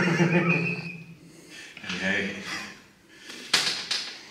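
A man laughing: a long pitched laugh in the first second and another burst around two seconds in. A short knock comes about three and a half seconds in.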